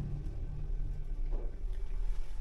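Steady low hum inside a passenger lift car as it rises between floors.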